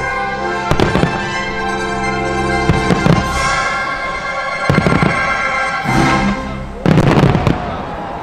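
Fireworks shells bursting in sharp bangs, one or a short cluster every second or two, the densest and loudest cluster near the end, over steady show music of held notes.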